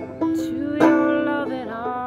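Banjo picked in a slow song, with a woman singing a long held note over it that bends down in pitch near the end.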